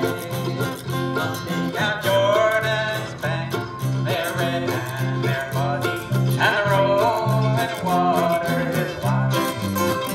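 Acoustic bluegrass band playing live: fiddle and plucked strings, with guitar and banjo, over a steady, evenly pulsing bass line.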